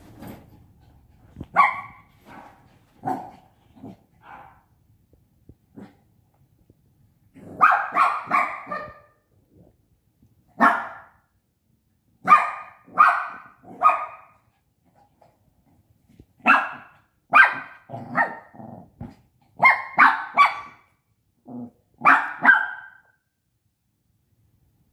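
Five-month-old Shih Tzu puppy barking: short barks, some single and some in quick runs of two to four, with pauses of a second or two between.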